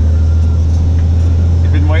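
Steady low hum of a Freightliner M2 rollback tow truck cruising on the highway, heard from inside the cab: engine and road noise droning evenly.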